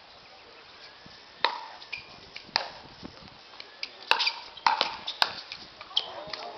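Pickleball paddles striking a plastic pickleball in a rally: a run of sharp pops, the first about one and a half seconds in, then roughly one a second, with fainter clicks in between.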